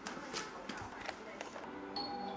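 Television voices playing in the background of a small room, with a few short knocks as a person walks across the carpeted floor.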